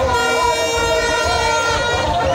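Horns blowing long steady notes over a cheering crowd, one held note starting just after the beginning and stopping near the end, with other tones layered over it.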